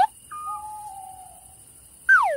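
Owl hooting: a short higher hoot, then one long hoot that falls slightly in pitch.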